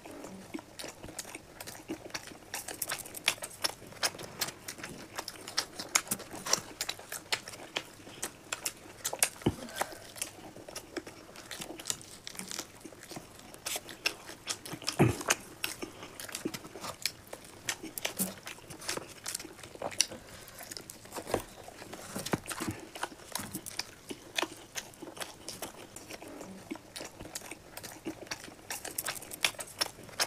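Close-miked eating: two people biting and chewing tandoori chicken, a steady irregular run of wet mouth clicks and smacks, with one louder smack or gulp about halfway through.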